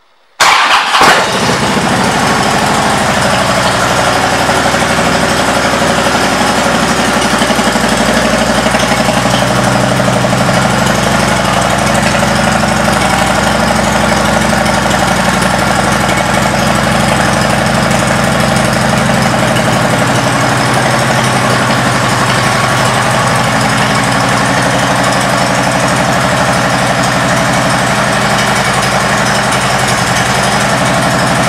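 A Harley-Davidson Ultra Classic's Twin Cam V-twin engine starts about half a second in, with a brief louder burst as it catches. It then settles into a steady idle through an aftermarket exhaust.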